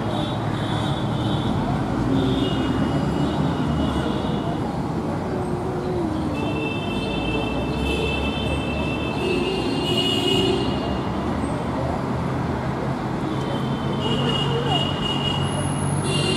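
Steady city road traffic noise, with vehicle horns sounding several times, held for a second or more. The longest spell of horns comes near the middle. Voices mingle in faintly.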